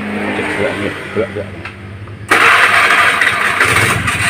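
Honda Vario 110 carburetted scooter's single-cylinder four-stroke engine running, then opened up about two seconds in so that it turns suddenly much louder and holds there. In the mechanic's judgement it runs cleanly here, without the stutter it shows on rough roads.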